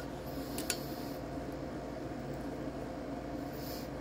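Steady low background hum of the workshop, with a couple of faint metallic clicks a little over half a second in as steel calipers are set against the cast-iron exhaust port.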